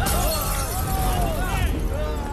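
Film fight sound: a sudden shattering crash right at the start, its hiss carrying on for most of the two seconds, under men shouting.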